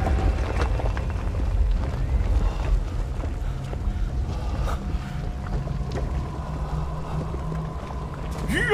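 A low, steady rumble like wind, with faint sustained tones and a few soft clicks over it.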